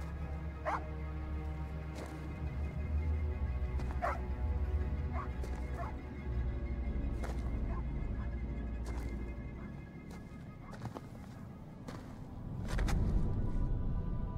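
A dog giving short high cries, four or five times in the first six seconds, over a low droning film score that swells near the end.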